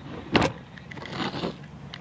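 A slab of sod handled on wooden deck boards: one sharp thump about a third of a second in, then faint rustling of grass.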